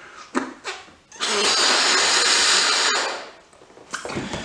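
A rubber balloon being blown up by mouth: one long, steady rush of breath into it, lasting about two seconds and starting about a second in, after a couple of short sounds.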